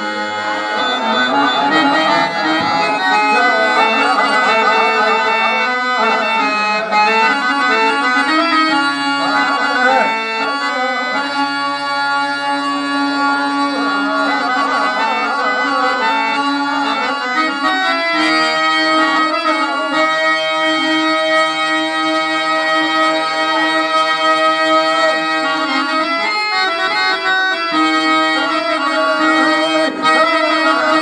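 Harmonium playing a melody over sustained held notes, with the low notes shifting every few seconds, as stage-drama accompaniment.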